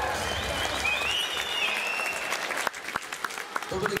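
Audience applauding and cheering as the dance music ends about a second in. The applause thins to scattered single claps near the end.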